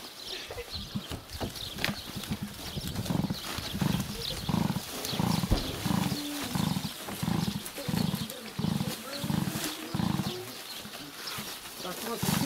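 Dry tree bark rustling and crackling as armfuls are tossed onto a loaded wooden cart. Over it, from a few seconds in until near the end, a low sound repeats about twice a second.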